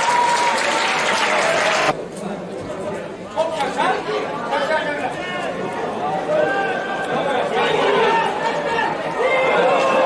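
Several voices talking and calling out at once, the words unclear. The sound breaks off abruptly about two seconds in at an edit, after which the voices are quieter.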